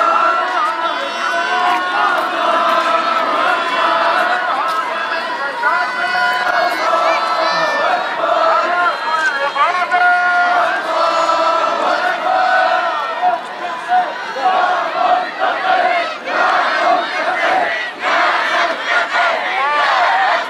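A large crowd of protesters shouting, many voices overlapping without a break.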